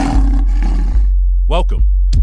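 A lion's roar sound effect, rough and loud, dying away about a second in, over a deep electronic bass beat.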